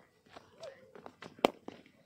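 A single sharp crack about one and a half seconds in, with a few lighter knocks and faint distant voices around it.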